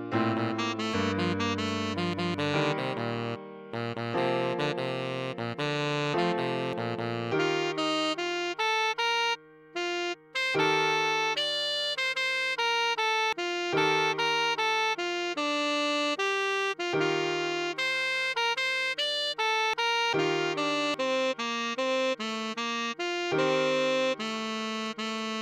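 A tenor saxophone melody played note by note over held piano chords, with a brief break in the melody about ten seconds in.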